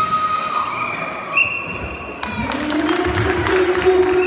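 Spectators clapping and cheering in a large sports hall, starting about two seconds in, over steady tones heard earlier.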